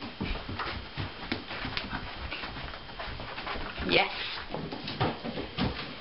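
A small dog playing tug with a toy in a handler's hands, with irregular scuffling and clicking as it jumps and pulls on the floor.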